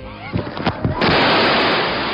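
A person falling into a fast, flooded river: a few knocks, then about a second in a sudden loud splash that runs on as rushing water noise.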